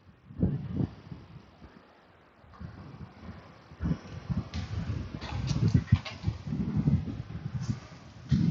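Plastic frames of a motorcycle foam air filter being handled and pressed together around the oiled foam element, giving soft irregular knocks, rubbing and a few sharper clicks as the frames snap into place.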